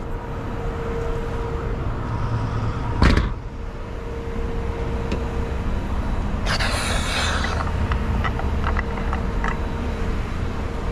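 A car door shuts with a single loud thump about three seconds in. Then the R32 Skyline GT-R's fuel filler cap is unscrewed, with a short hiss lasting about a second and a few light clicks. A steady low rumble and hum run underneath.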